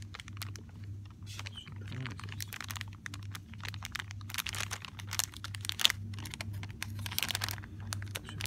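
Clear cellophane bag of plastic party favors crinkling and crackling as a hand squeezes and handles it, in irregular bursts that are heaviest from about halfway through and again near the end, over a low steady hum.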